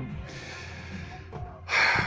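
A man breathing out softly, then a short, sharp intake of breath near the end.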